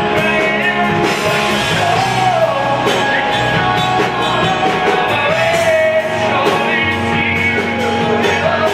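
Live rock band playing: a male voice singing a wavering melody over electric guitars and a drum kit.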